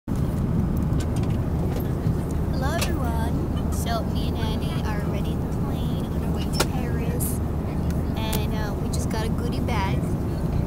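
Airliner cabin noise: a steady low drone from the aircraft's engines and air system, with voices talking over it.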